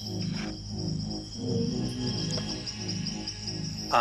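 Low, slowly pulsing background music under a steady high chirping of crickets.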